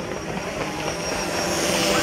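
A steady motor hum that slowly grows louder, with a rushing hiss swelling near the end.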